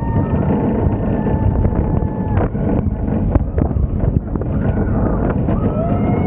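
Steel roller coaster train running fast along its track, with a constant rumble and wind buffeting the camera's microphone at the front of the car. A steady high whine is heard for the first two seconds or so, and a rider's whoop comes near the end.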